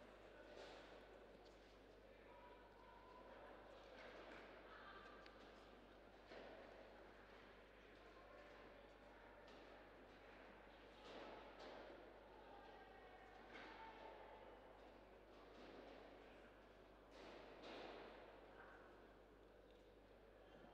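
Near silence: quiet indoor arena room tone with faint, distant voices now and then and a steady low hum.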